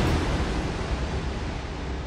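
Hissing whoosh-like wash of noise from a news channel's logo ident, following a musical hit and slowly fading away.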